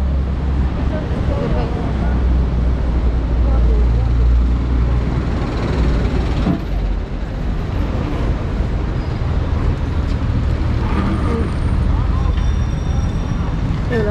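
Busy city street ambience: a steady low rumble of traffic and wind, with the voices of passersby.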